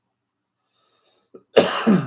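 A man coughs once, hard, into his hand, about a second and a half in.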